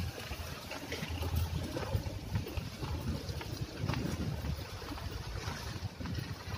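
Wind buffeting the microphone: a low, uneven, gusting rumble.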